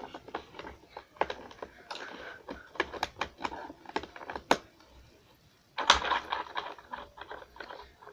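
Plastic clicks and taps as a paper card is pushed and fitted onto a toy spin art machine's platter, then just before six seconds in the toy's small motor starts with a sudden jolt and runs, spinning the card with a buzzing rattle.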